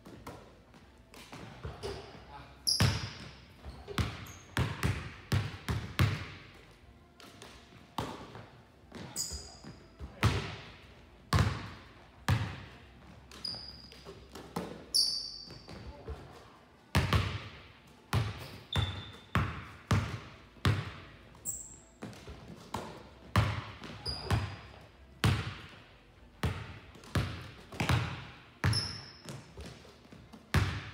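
Basketballs bouncing on a hardwood gym floor and banging off the backboard and rim in a shooting drill, one or two sharp hits a second with a ringing echo, and brief high sneaker squeaks now and then.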